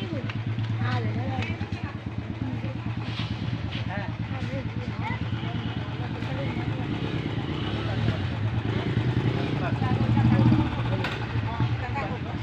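A motor runs steadily with a low, pulsing hum under the chatter of people talking, growing louder about ten seconds in.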